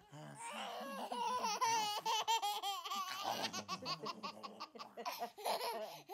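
A baby laughing in quick repeated bursts, with an adult laughing along while playing with him.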